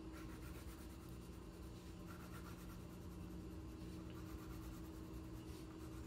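Faint sound of a crayon being rubbed back and forth on paper with a cardboard backing, as an area is colored in, over a steady low hum.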